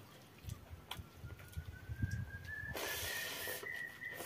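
A hand squishing and mixing panta bhat, soaked rice in water, in a steel bowl, with a wet hissing squelch in the last second or so. A thin whistle-like tone rises slowly in pitch for about three seconds behind it.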